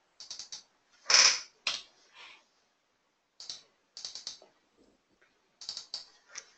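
Computer keyboard keys and mouse buttons clicking in short quick clusters as settings are typed in and selected, with a louder, heavier knock about a second in.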